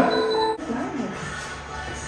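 Background music with held notes, dropping in level about half a second in, with a brief voice over it.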